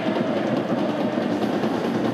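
Steady din of a football stadium crowd, a continuous even roar of supporters with no single event standing out.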